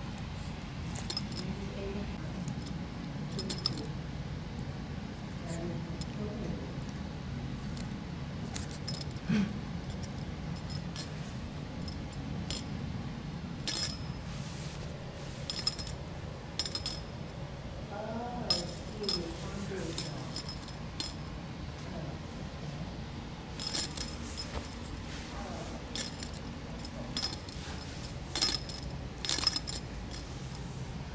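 A Yorkshire terrier's metal collar tag jingling and clinking in short bursts as the dog moves about, over a steady low hum.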